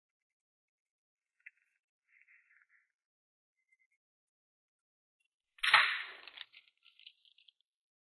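A desk drawer pulled open with a sudden rattle of its contents about five and a half seconds in, fading within a second; before it only a faint click and soft rustling.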